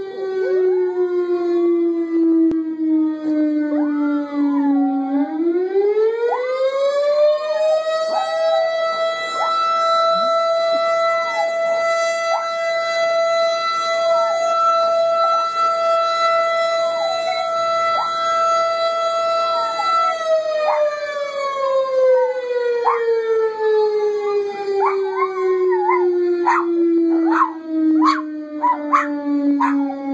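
A small terrier puppy howls along with an outdoor warning siren. The siren falls, rises about five seconds in, holds one steady pitch, then winds slowly down from about twenty seconds. The puppy gives a series of rising-and-falling howls over the steady tone and breaks into quick short yips near the end.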